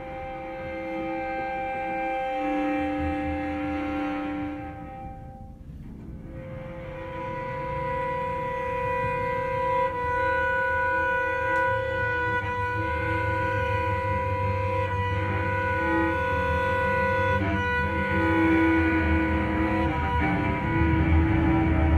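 Violin and cello playing long, sustained bowed notes in a free improvisation. The sound thins out briefly about five seconds in, then the held notes return with a stronger low cello register underneath.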